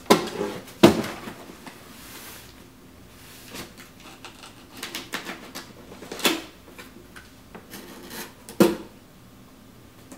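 A cardboard box being handled and opened by hand: flaps and sides rustling and scraping, broken by sharp knocks as it is set down or struck, the loudest right at the start, about a second in, about six seconds in and about eight and a half seconds in.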